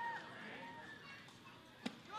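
Faint ballpark crowd ambience, with a brief high call from the stands, then a single sharp pop near the end: the pitch smacking into the catcher's mitt on a swinging third strike.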